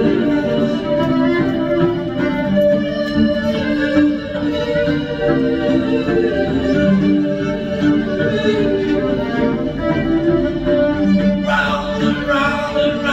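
Fiddle playing a melody in held notes and runs; near the end a man's voice comes in over it.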